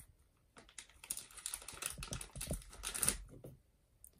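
Small plastic model-kit parts and clear plastic being handled, a quick run of light clicks and rustles that starts about a second in and stops shortly before the end.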